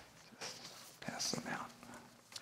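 Quiet whispering and low murmured talk among people in the room.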